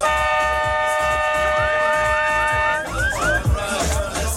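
A steady held note sounds for almost three seconds and then stops, over voices of people talking.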